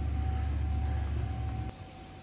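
Steady low rumble with a faint thin hum above it, which cuts off abruptly with a click near the end.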